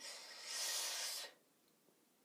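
A hand swishing the water in a small enamel bowl: a soft hissing rush lasting about a second, then stopping.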